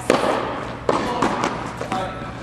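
Tennis ball being hit by rackets and bouncing in a rally: four sharp hits in two seconds, each followed by a short echo.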